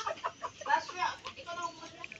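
Chickens clucking, with people talking in the background.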